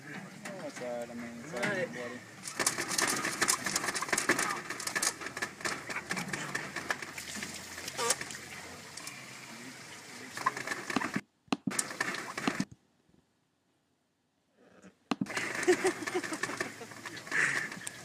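Indistinct voices with clicks and rustling, and chickens' calls; the sound cuts out completely for a couple of seconds about two-thirds of the way through.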